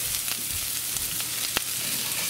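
Diced onions and butter sizzling in a hot skillet, being stirred with a wooden spoon as they caramelize. A single sharp click sounds about one and a half seconds in.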